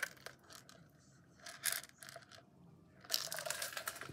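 Bath & Body Works PocketBac holders, small plastic and silicone cases with metal clips, knocking and clinking as they are handled and set down among the others. There are a few separate clicks, then a quick run of small clatters near the end.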